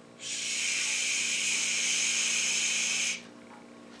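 A person shushing: one long, steady "shhh" lasting about three seconds.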